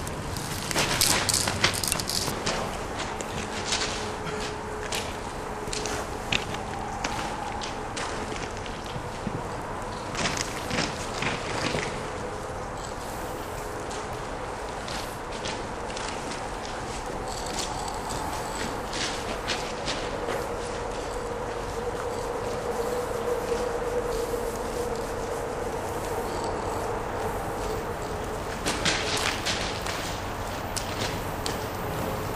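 Aerosol spray-paint cans hissing in short bursts against a concrete wall, repeated many times, over a steady background hum.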